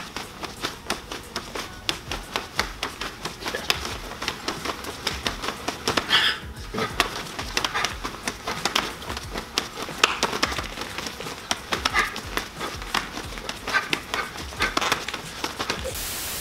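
Forearms and karate gi sleeves slapping and snapping together in a fast karate blocking drill, many quick irregular strikes and blocks several times a second.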